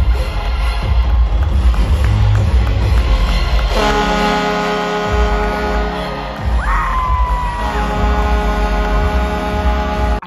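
Loud arena sound-system music with heavy bass over a cheering crowd during a hockey pregame intro, recorded on a phone in the stands. About four seconds in a long held chord comes in, and a brief high tone slides up and back down around seven seconds.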